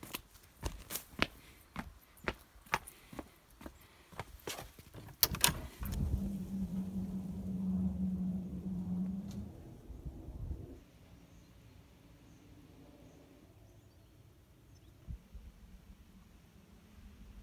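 Footsteps on garden paving, about two to three steps a second, ending in a couple of sharper knocks about five seconds in. Then a steady low hum for about five seconds that stops abruptly, leaving only faint background sound.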